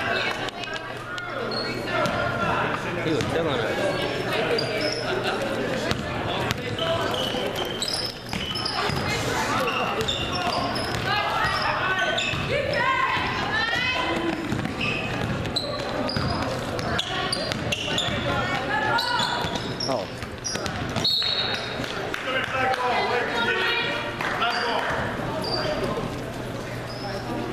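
Basketball bouncing on a hardwood gym floor during play, with voices calling out and short high squeaks, echoing in a large gym.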